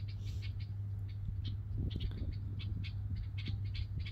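Faint bird chirps, short and irregular, over a steady low hum.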